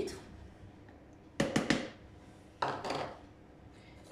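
Flour emptied from a small plastic measuring cup into a plastic measuring jug, with two short clusters of quick plastic taps and knocks: the cup rapped against the jug to shake it empty, about a second and a half in and again about a second later.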